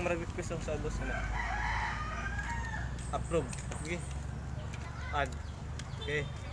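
A rooster crowing once, a drawn-out wavering call of about two seconds starting about a second in.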